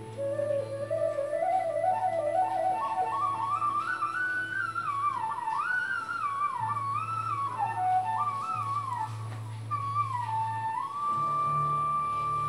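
Background music: a flute melody over a low steady drone. The melody climbs in pitch through the first few seconds, winds up and down in small ornamented steps, then ends on a long held note.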